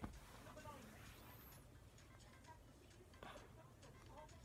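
Near silence: a faint low hum with a few faint snatches of a voice and light clicks.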